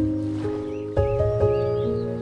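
Slow solo piano music, a new note or chord struck about every half second and left ringing, over a soft wash of ocean waves.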